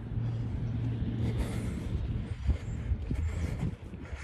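A motor vehicle running, heard as a steady low drone with a few faint knocks.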